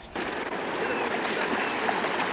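Fast-flowing river water rushing steadily, setting in suddenly just after the start.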